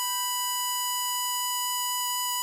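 Harmonica holding one steady high note, B5 on the 7-hole draw, with no vibrato, so that it sounds almost like an electronic beep.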